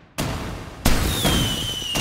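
Fireworks sound effect: two sharp bursts in quick succession, the second the loudest, each trailing off in crackle, then a thin whistle slowly falling in pitch.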